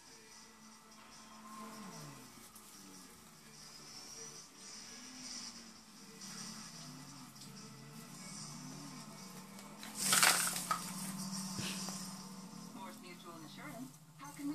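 A television or music playing in the background, with a low voice-like melody gliding up and down. About ten seconds in, a brief loud rustling burst stands out.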